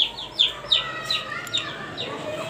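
A bird chirping: a quick series of short, falling chirps, about three a second.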